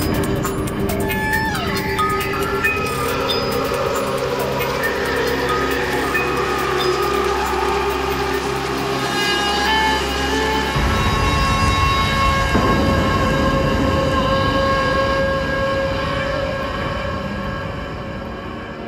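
Psytrance breakdown: layered sustained synth tones with a few sliding notes over a held bass drone. Crisp high percussion drops out after the first two seconds, and the bass changes about eleven seconds in.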